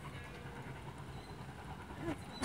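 Low, steady rumble of a distant train.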